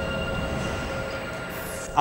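Dark ambient background music: a sustained drone over a low rumbling haze that slowly fades, with a faint rising whoosh near the end.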